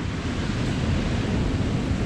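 Steady wind buffeting the microphone over the wash of surf on a beach.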